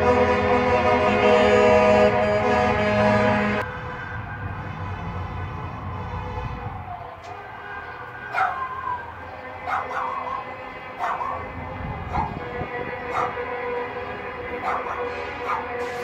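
A long, loud horn blast with several steady tones for the first three and a half seconds, cutting off suddenly, then a dog yelping and barking about seven times at intervals.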